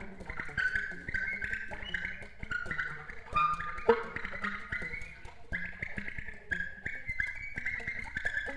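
Free-improvised solo alto saxophone playing fast runs of short high notes that step up and down, with a faint low tone held underneath.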